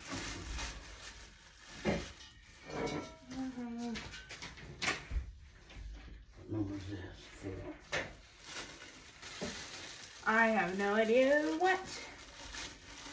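Plastic wrapping crinkling and rustling as it is pulled off bed-frame pieces, with scattered clicks and knocks of handling. A wavering voice sounds near the end.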